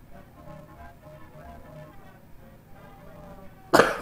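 Faint background music with steady held notes; near the end a man gives one sudden, loud cough, a reflex set off by a nasal swab pushed up his nose.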